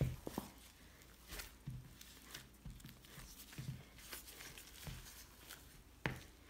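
Samosa dough being kneaded by hand in a metal bowl: faint, irregular soft pats and thuds, about one or two a second, with light rustling.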